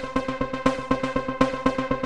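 AIR Transfuser 2 factory preset playing back: a rhythmic synthesizer pattern of short, evenly repeated notes, about eight a second.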